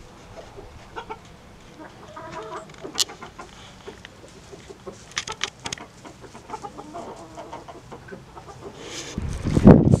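Backyard hens clucking quietly, with short calls and scattered light ticks and scratches. Near the end a loud low rumble comes in.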